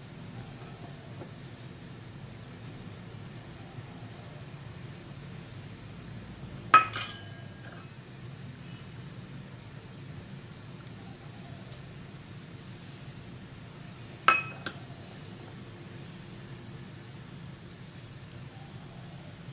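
Two sharp metallic clinks about seven seconds apart, each ringing briefly: a spoon knocking against small stainless steel ramekins while they are greased with butter. A faint steady low hum runs underneath.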